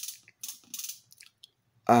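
Korg Monotribe's analogue hi-hat playing its pattern on its own from a separate output, a run of short hissy ticks about three a second.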